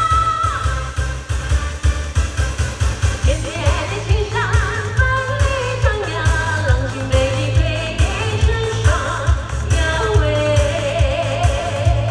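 A woman sings an Asian pop song into a microphone over a loud amplified backing track with a heavy, steady bass beat; her voice comes in about three seconds in.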